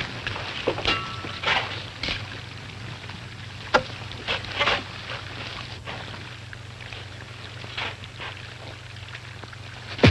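Low steady hum of an old film soundtrack, with a few brief scratchy noises and a sharp click a little under four seconds in.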